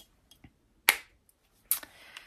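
One sharp click about a second in, with a few fainter small clicks before it and a short soft rustle near the end.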